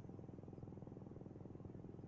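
Faint, steady engine rumble of a distant military aircraft flying slowly past, a low drone with a fine even pulse.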